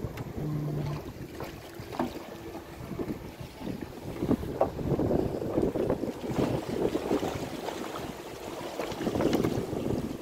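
Wind buffeting the microphone: a rough rushing that swells and fades, with a few light knocks mixed in.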